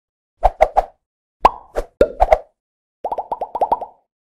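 Logo-animation sound effects: a string of short pops with silence between. There are three quick pops, then a few louder ones with a brief pitched ring, then a rapid run of about ten bubble-like pops near the end.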